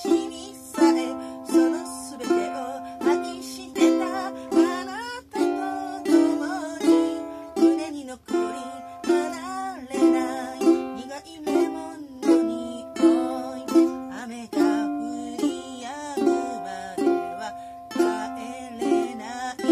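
A woman singing while strumming chords on a ukulele at a steady, even pulse.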